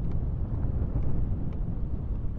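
Steady low rumble of wind buffeting the microphone while moving slowly along.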